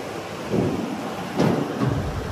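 A Mahindra Bolero SUV rolling down a steel car-carrier loading ramp, with two thumps about a second apart as its wheels come down off the ramp, over a low rumble.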